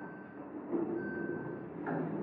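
Elevator signal beeping twice, two steady high tones about a second apart, as the car stands at the floor with its doors open. A sudden knock comes near the end.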